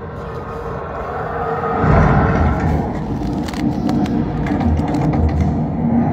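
Horror film soundtrack playing in a cinema: eerie music with held tones, then a loud low rumble swells in about two seconds in, with scattered knocks and clicks over it.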